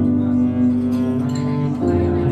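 Live duo of stage piano and cello playing a slow piece. The cello holds long bowed notes under piano chords, moving to a new note near the end.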